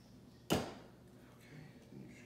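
Clamshell heat press lid swinging open and hitting its stop: a single sharp metal clunk about half a second in, with a short ring after it.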